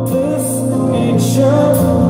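A male singer singing a slow song live into a microphone, with his own acoustic guitar and a steady sustained backing underneath, through the venue's PA.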